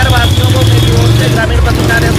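Speech over a steady low rumble, with a thin high steady tone that stops about a second and a half in.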